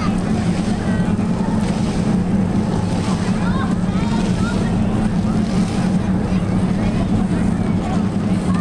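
Steady outdoor city-square ambience: a constant low hum under a din of distant voices and traffic.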